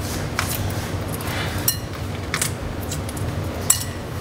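Shell of a grilled egg being peeled off by hand, giving a few sharp, scattered crackling clicks as pieces break away.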